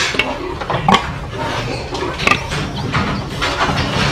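Indoor pig barn sound: a steady mechanical hum, with a few short knocks or clanks, around a sow in a metal farrowing crate.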